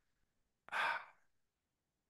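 A man's single short sigh, a quick breath out lasting about half a second, starting a little under a second in.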